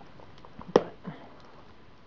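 Faint rustling and a few light clicks of wrapping paper and packing tape as a wrapped package is handled and worked open.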